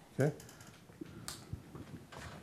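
A man says "okay", then faint scattered clicks and a brief rustle as he moves at a whiteboard with a marker in hand.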